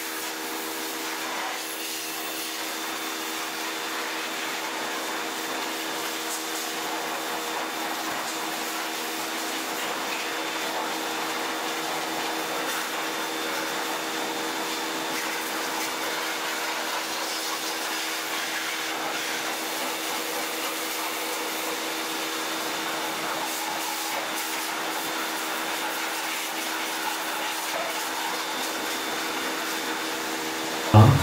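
A CPT 120-bar electric pressure washer running steadily, its motor and pump giving a constant hum under the hiss of the water jet spraying the motorcycle.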